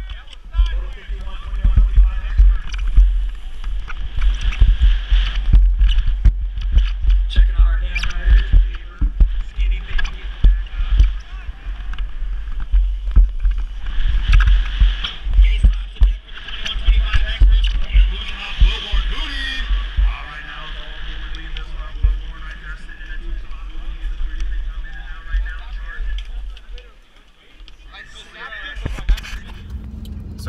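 Wind buffeting the microphone of a camera on a BMX rider racing down a dirt track, a loud low rumble with tyre and riding noise, and voices in the background; the rumble dies down near the end.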